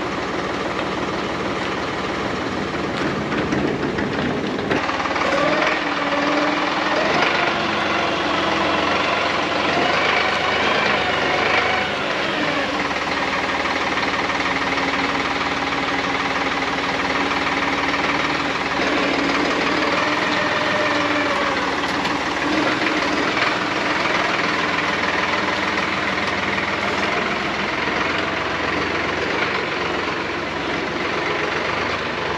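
Solis 50 compact tractor's diesel engine running steadily, its pitch rising and falling several times as it revs up and settles back.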